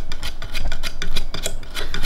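Small dog scratching and rubbing at the fabric bedding of a small wooden doll bed: a quick run of rasping scrapes.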